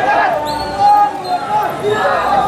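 A crowd of marchers shouting protest slogans, several voices overlapping with long held shouts.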